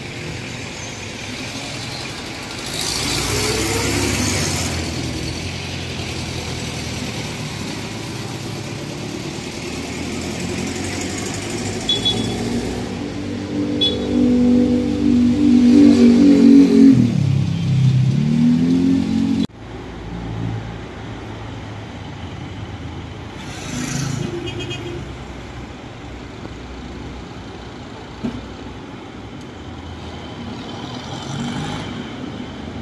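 Street traffic with a motor vehicle's engine passing close. Its note builds to the loudest point about halfway through, dips in pitch and climbs again, then cuts off suddenly. A steadier traffic hum follows.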